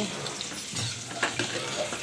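A steel spoon stirring mutton and urad dal in a pressure cooker pot as it cooks on the stove, with a few light clicks of the spoon against the pot.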